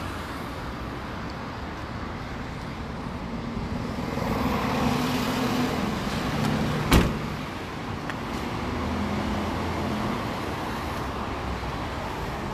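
Steady outdoor road traffic noise, with a single sharp thump about seven seconds in.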